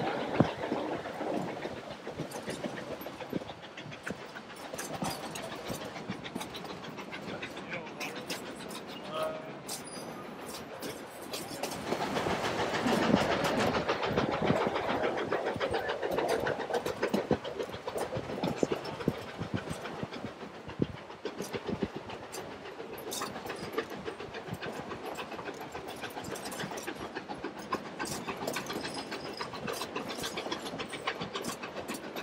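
Narrow-gauge passenger train rolling along the track, heard from an open-sided car: a steady rumble of the cars with irregular clicking and clacking of the wheels over the rail joints, growing louder for a few seconds around the middle.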